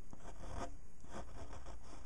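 Gel ink pen scratching across paper in short, quick strokes, about three or four a second.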